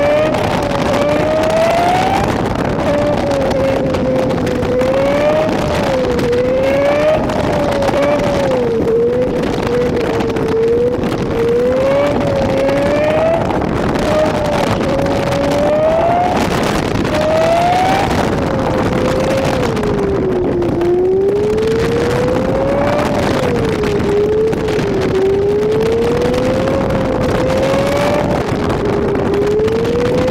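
Honda Civic Si engine pulling through a winding drive, its pitch climbing under acceleration, then dropping at each shift or lift-off, over a steady rush of wind and road noise.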